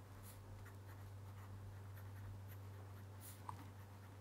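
Faint scratching of a pen writing on paper, in short irregular strokes, over a low steady hum.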